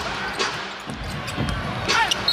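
Basketball being dribbled on a hardwood court, a thump roughly every half second, over steady arena crowd noise.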